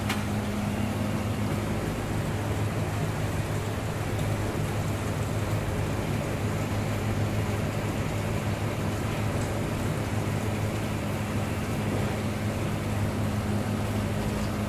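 Steady low mechanical hum, like a motor or fan running, under a constant even hiss.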